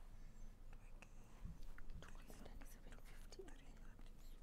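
Faint whispering between two people conferring quietly, with a few light ticks and taps over low room tone.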